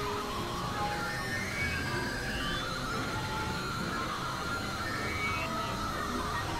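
Experimental electronic synthesizer music: a dense, noisy drone texture with wavering middle tones and a few short tones gliding upward in pitch.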